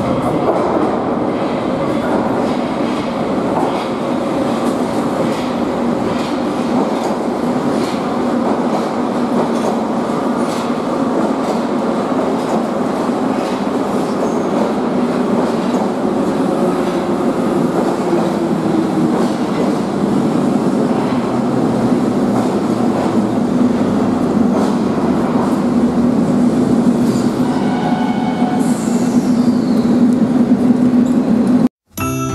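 Em-type (81-704/705/706) Leningrad metro train running into the station and slowing to a stop: continuous rolling rumble with wheel clatter and a steady low tone that grows louder, and a falling high squeal near the end.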